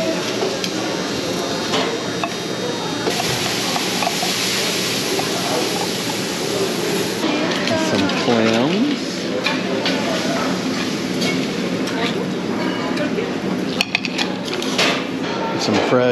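Buffet dining-room clatter: metal serving tongs clinking on oyster shells, crushed ice and a plate, with dishes and background voices, and a few sharp clinks near the end.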